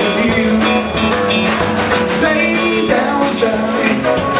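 Live band playing an upbeat country-rock shuffle: electric and acoustic guitars over a steady drum beat.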